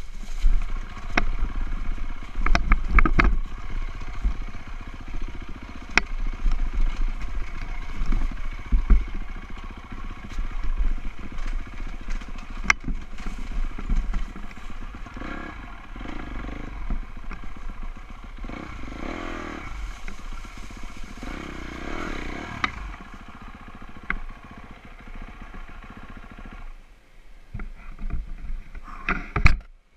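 Dirt bike engine running under a rider, its revs rising and falling as it climbs a rough trail. Sharp knocks and rattles from the bike come through the engine sound throughout, and it quietens shortly before the end.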